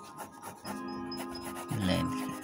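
Coloured pencil scratching and rubbing on paper in quick repeated strokes, blending brown into the shading, over background music.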